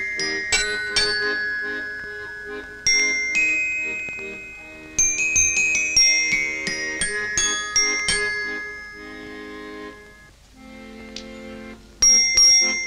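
Glockenspiel playing a slow melody, each struck note ringing out and fading, over lower held notes. About ten and a half seconds in, the bell notes stop and a quieter low chord is held.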